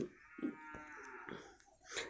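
A faint, drawn-out pitched call lasting about a second, rising slightly and then falling away, with a soft click in the middle.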